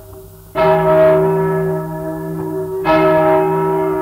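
A single large church bell, the 1155 kg O.L.V. Hemelvaart bell, tolled slowly as a death knell. It gives two strokes about two and a half seconds apart, each ringing on and slowly fading. Under it runs the steady hum and faint clicking of an old 78 rpm disc recording.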